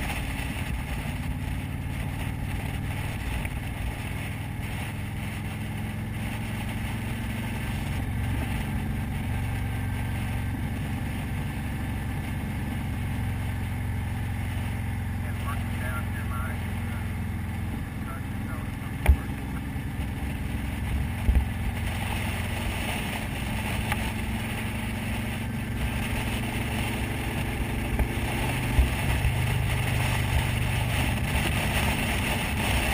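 Motorcycle engine running steadily at cruising speed with wind rushing past, heard from on board the bike. A few sharp knocks come through, a pair about two-thirds of the way in and one near the end.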